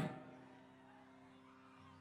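Near silence, with only a faint steady hum of a few low held tones.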